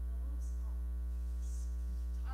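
Steady low electrical mains hum with a ladder of higher overtones, a constant drone on the audio line.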